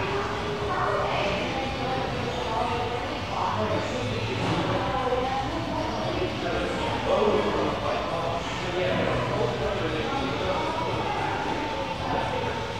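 Indistinct background voices of people talking in a large room, overlapping, with no one voice clear.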